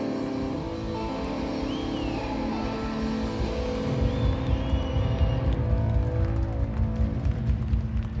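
A live rock band playing: electric guitars and bass sustaining held notes, with a steady drum beat coming in louder about halfway through.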